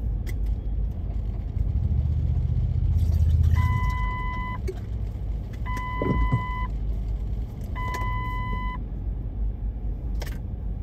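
Heavy street traffic, with a vehicle engine rumbling that swells about two to three seconds in. Three long, steady electronic beeps follow, evenly spaced about two seconds apart.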